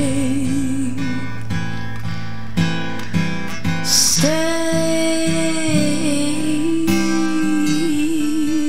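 Female voice singing a slow ballad with acoustic guitar accompaniment. A long note with vibrato ends about a second in, a few plucked guitar notes fill the gap, and a new long note is held from about halfway.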